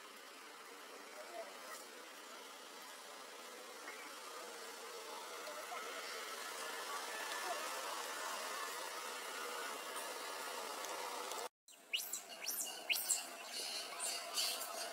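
Outdoor background: a steady hiss of insects with faint distant voices, slowly growing louder. Near the end, after a very short gap of silence, a run of sharp clicks and crackles.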